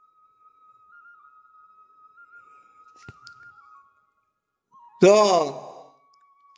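A faint, thin, high steady tone, stepping slightly up and down in pitch, fades out about four seconds in, with a single click a little before. A man then says one short word near the end.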